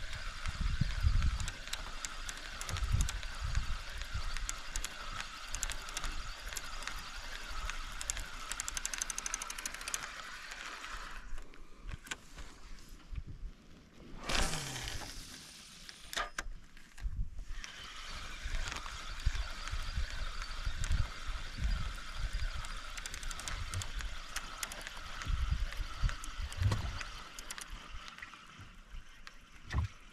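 Outdoor swamp ambience: a steady high buzzing with fine clicks that drops out for a few seconds midway, over scattered low bumps of a fishing rod being handled in a wooden boat, and one falling sweep about halfway through.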